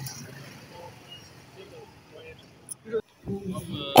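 Street traffic noise: a low hum of motorbike and scooter engines with scattered distant voices. It drops out for a moment about three seconds in, and a different street background follows.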